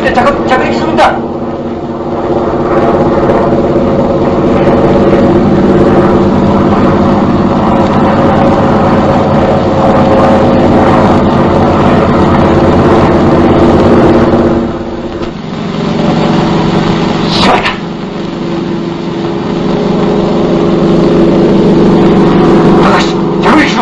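Propeller aircraft engine droning steadily in flight, a low even hum with several pitched layers, heard on an old film soundtrack. About fifteen seconds in it dips in level and settles at a slightly different pitch, with a brief voice over it a little later.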